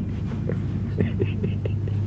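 A man chuckling softly and breathily, in a few short bursts in the second half, over a steady low hum.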